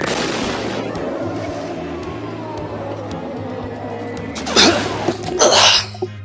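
A sudden rushing whoosh sound effect of a super-speed dash, with a faint tone sliding downward through it, then two loud crashing impacts about a second apart near the end, as of a tumbling fall onto the ground.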